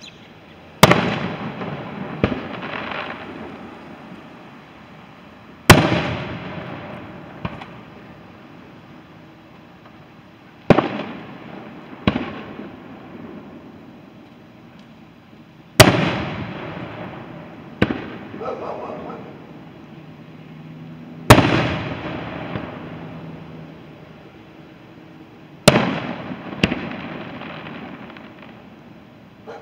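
Aerial firework shells bursting, six loud bangs about five seconds apart, each followed a second or two later by a weaker second bang and a long fading rumble.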